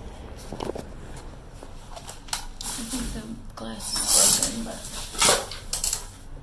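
Loud crinkling and scraping of plastic trash bags as a reacher-grabber tool is pushed into a dumpster, in two bursts near the end, with a short voice-like sound just before them.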